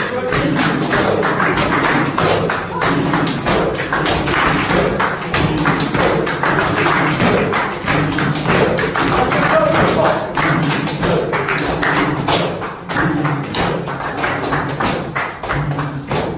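A group clapping their hands in rhythm, with voices chanting and calling out over the claps.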